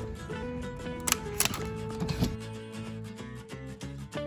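Background music, with two sharp clicks a little after a second in from the hotel room door's keycard lock and handle, then a low thud as the door swings open.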